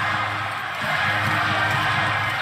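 Steady arena crowd noise with music playing over the arena sound system, and a basketball being dribbled on the hardwood court.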